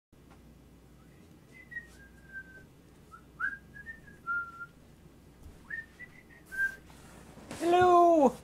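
A person whistling three short phrases of a tune, each a few clear notes with small slides in pitch. Near the end comes a loud, drawn-out vocal sound whose pitch rises and then falls.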